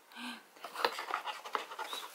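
Cardboard box and bubble-wrap packing being handled: rustling with several sharp clicks and knocks. A brief hum of voice comes near the start.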